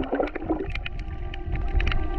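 Underwater sound from a snorkeler's camera: a muffled water rush with scattered sharp clicks and a steady hum of a few held tones.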